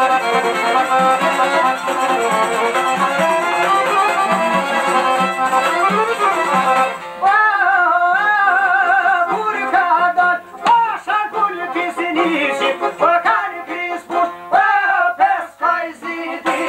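Albanian folk music on plucked long-necked lutes (sharki and çifteli) with frame drum, played as an instrumental passage; about seven seconds in a man starts singing over it in a wavering, ornamented line broken by short pauses.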